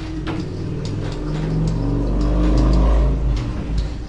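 A passing motor vehicle: a low engine rumble that builds to its loudest around three seconds in, then drops away.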